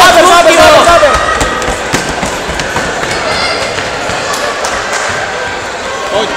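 A loud, high shout from a child's voice right at the start, then the ongoing din of children's voices with many quick footfalls and thuds of running feet on a wooden gym floor, ringing in a large hall.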